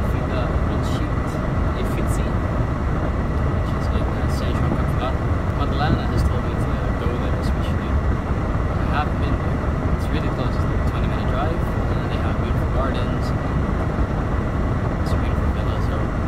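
A man's voice nearly buried under steady, heavy rumbling noise on the microphone, the poor audio of a phone recording in a car cabin. A faint steady high tone runs underneath.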